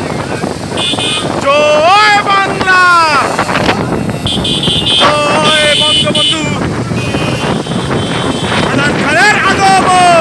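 Motorcycles running together with wind buffeting the microphone. Horns honk briefly about a second in and again steadily from about four to six and a half seconds. A man gives long, drawn-out shouts over them, twice.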